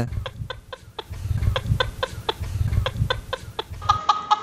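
A comic sound effect: a run of short, sharp calls at about four a second, over a low pulsing beat.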